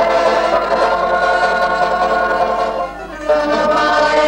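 Banjo strummed as accompaniment to singing with long held notes, with a short break about three seconds in before the music starts again.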